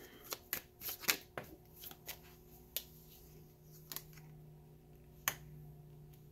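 Tarot cards being shuffled and handled by hand: a quick run of soft card flicks and snaps over the first second and a half, then a few single clicks as the deck is handled and a card is drawn. A faint steady hum sits underneath.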